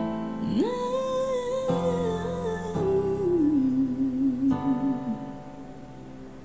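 Ballad intro: a woman's voice sings one long wordless note. It swoops up, holds, then slowly steps down and fades over sustained accompaniment chords that change every second or two.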